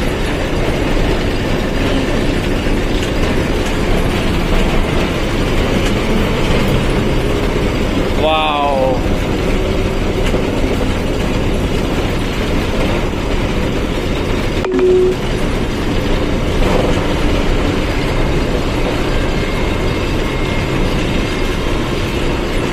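Truck cab interior noise while driving: the truck's engine and road noise with cab rattle, loud and constant. A short wavering pitched sound comes about eight seconds in, and a brief steady tone with a click near the fifteenth second.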